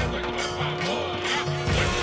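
Devotional background music for a Ganesh prayer: a steady held drone note under recurring low drum beats, with voices chanting the prayer.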